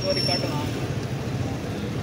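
Steady low rumble of street traffic, with a brief voice just after the start.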